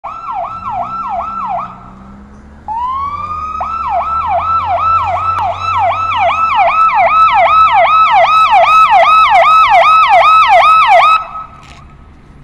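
Police car siren yelping in fast, repeated falling sweeps, about three a second. It stops briefly about two seconds in, winds back up, grows louder, and cuts off suddenly a second before the end.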